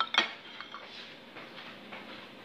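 Metal cutlery clinking against a plate while eating: two sharp clinks right at the start, then a few fainter taps.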